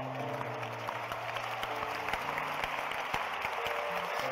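Congregation applauding, a dense patter of many hands clapping, over held low musical chords.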